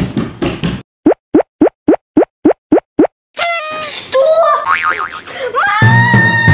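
Cartoon sound effects: a short noisy burst, then eight quick rising boing-like plops, about three or four a second. After that comes a busier run of gliding, whistling effect tones, ending in a held tone near the end.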